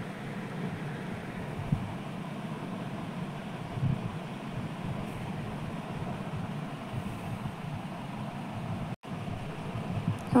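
Steady low background hum under faint stirring: a steel ladle working through thick yogurt raita in a clay pot, with one sharp tap against the pot a little under two seconds in. The sound drops out for an instant near the end.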